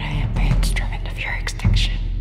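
Trailer soundtrack: a whispered voice over a low, steady music bed, with a deep hit swelling up about three-quarters of the way through.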